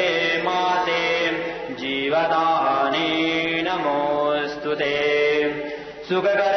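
Voices chanting a Sanskrit devotional mantra in long held notes that step up and down in pitch about once a second, pausing briefly for breath a few times.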